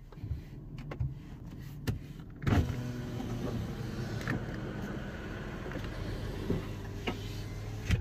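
A car's electric power window motor running as the side window is lowered, starting with a sudden jolt about two and a half seconds in and then whirring steadily, over a low idling car hum.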